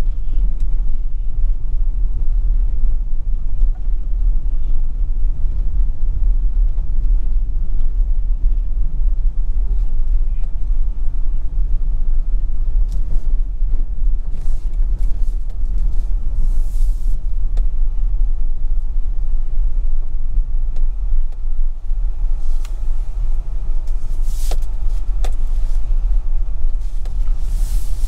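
Steady low rumble of a vehicle moving along a rough road, mixed with wind buffeting the microphone. Several brief knocks and rustles come in the second half.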